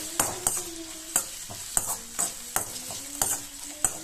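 Perforated steel spoon scraping and knocking against a metal kadai as sliced onions, green chillies and curry leaves are stirred in hot oil, about two knocks a second over a faint sizzle.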